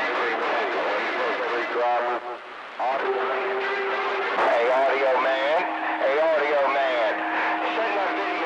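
Indistinct voices coming in over a CB radio on channel 28, heard through static. From about three seconds in, steady whistling tones from other carriers sit under the voices.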